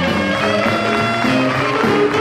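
Jazz big band playing a swing tune, with sustained horn notes over the rhythm section and a steady beat on the cymbals.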